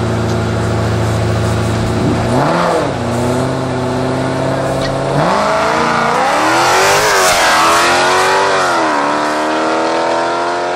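Muscle-car V8s, a Camaro and a 392 HEMI Challenger, idling at the start line with one short rev, then launching about five seconds in and accelerating hard through several upshifts as they pass, loudest around seven seconds.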